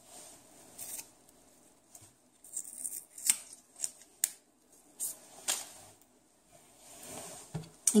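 A small test-strip packet being torn open and handled by hand: a scattering of short crinkles and sharp clicks, spread through the middle seconds.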